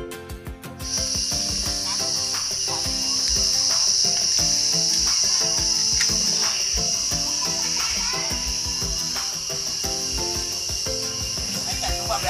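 A loud, steady, high-pitched drone of insects that cuts in suddenly about a second in and holds, over background music.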